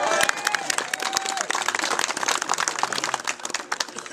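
A small crowd clapping, with dense, irregular claps throughout and a voice heard briefly in the first second.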